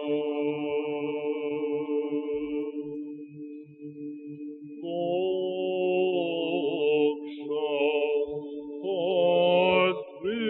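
Byzantine chant in plagal fourth mode: a low drone (ison) is held steadily throughout under a solo cantor's voice. The cantor holds a long note, breaks off about three seconds in while the drone carries on, then comes back about five seconds in with an ornamented, wavering melismatic line.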